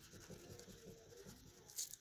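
Faint, irregular scratching of a wax crayon rubbing on paper as a small box is coloured in.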